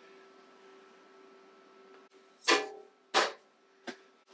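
The drill press's hinged top pulley cover being shut: two loud knocks under a second apart past the middle, the first with a short ring, then a small click near the end.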